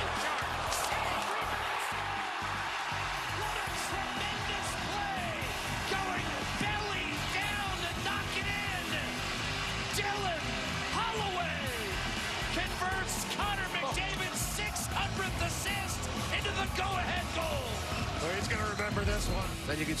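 Music over the live sound of an ice hockey game: arena crowd noise with knocks of sticks and puck, the crowd growing a little louder near the end as the play ends in a goal.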